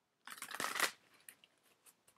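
A deck of oracle cards shuffled by hand. There is one quick burst of card edges riffling, under a second long, then a few light clicks as the cards settle.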